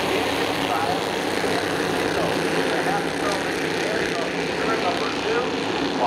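A field of Bandolero race cars running together as a pack just after the green flag, their small engines merging into a dense, steady drone.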